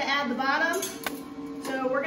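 A voice over background music, with one sharp click about a second in.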